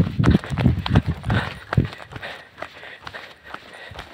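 Footsteps of a person walking briskly on an asphalt road, heavy low thumps about two to three a second on a handheld phone microphone, loud for the first two seconds and then much fainter.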